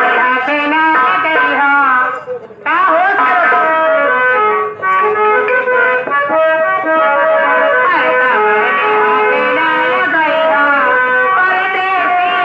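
Live stage-band music: a melody of held notes stepping up and down, with a brief break about two and a half seconds in.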